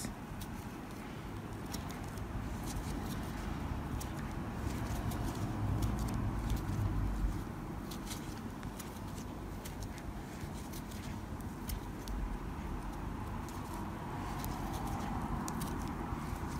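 Faint rustling and scratching of thick jumbo cord being worked with a metal crochet hook, the cord drawn through the stitches, with scattered small clicks and a soft handling rumble in the middle.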